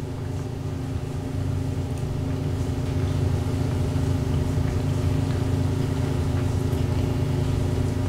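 Steady low machine hum holding a few even tones, slowly getting louder.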